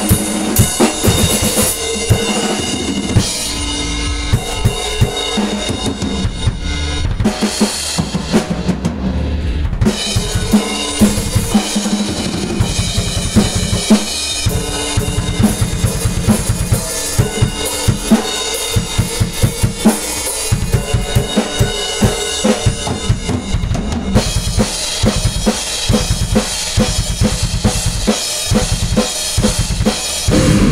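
Yamaha drum kit played hard and fast, with a steady stream of kick drum and snare hits and cymbals over a few held steady tones. The cymbals drop out for a couple of seconds about a quarter of the way in.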